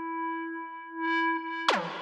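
Electronic music: a sustained synthesizer note held at one steady pitch, then near the end a burst of sharp, noisy hits with quickly falling pitch sweeps.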